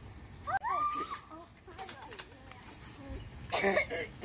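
Girls' voices without words: a gliding, wavering squeal about half a second in, then a short, loud vocal outburst near the end.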